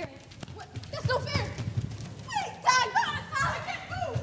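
High-pitched young voices squealing and calling out in short, excited bursts, starting about a second in and growing louder toward the end.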